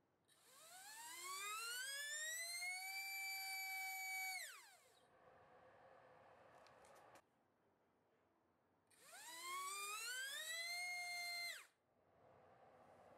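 T-Motor F20 1406-4100KV brushless motor on 4S spinning a 3-inch tri-blade propeller on a thrust stand, run up twice: each time the whine rises in pitch as the throttle ramps up, holds at full throttle for about two seconds, then falls away quickly as it is cut. A few faint clicks come between the two runs.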